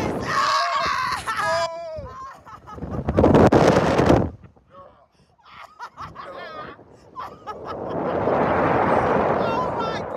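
Riders on a slingshot reverse-bungee ride screaming as the capsule flies, with two loud rushes of wind over the microphone, one about three seconds in and a longer one near the end.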